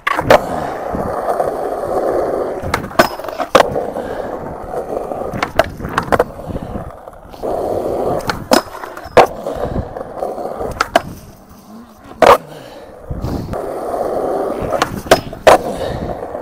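Skateboard wheels rolling over rough concrete, with a sharp clack every second or few as the board's tail pops and the board lands back on the ground. The rolling comes in stretches with brief breaks, and the clacks are the loudest sounds.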